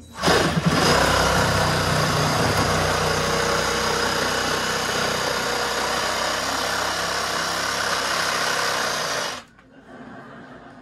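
Cordless reciprocating saw cutting into the base of a wall, running steadily for about nine seconds and stopping suddenly near the end.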